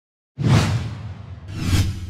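Two whoosh sound effects from an animated logo intro. The first starts suddenly just under half a second in and fades away; the second swells up to a peak near the end, over a low steady hum.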